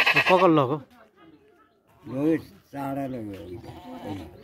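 Goat bleating: a loud, quavering bleat at the start, then two more calls about two and three seconds in.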